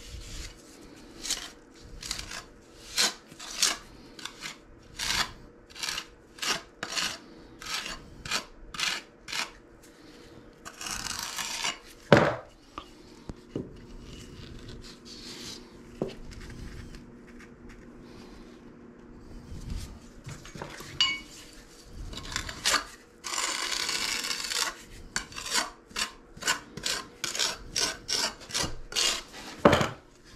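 Steel putty knives scraping and working thinset mortar: a run of short scrapes, one after another, with two longer scraping passes and a sharp knock, the loudest sound, about twelve seconds in.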